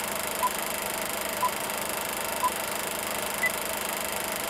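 Old-film countdown-leader sound effect: the steady hiss and crackle of a running film reel, with a short beep once a second. Three beeps are at one pitch and a fourth, higher beep comes near the end.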